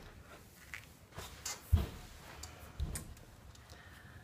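A few dull household thumps and light knocks: a strong thump a little before halfway, a smaller one near the end, and faint clicks between them.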